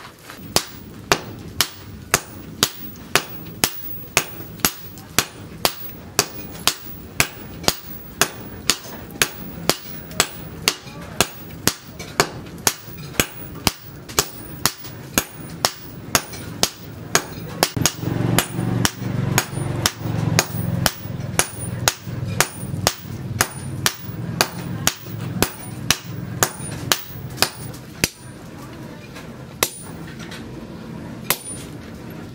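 Hand forging: hammer blows on red-hot axle steel on a steel post anvil, a steady rhythm of about two sharp strikes a second throughout. About halfway through, a low hum joins under the blows and fades near the end.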